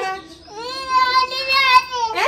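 A toddler crying: after a brief lull, one long held wail starting about half a second in.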